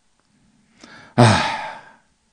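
A man's heavy, exasperated sigh ("ah"), preceded by a faint intake of breath. It starts loud about a second in and trails off.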